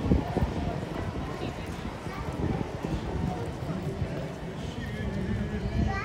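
People talking, with many short clopping knocks throughout.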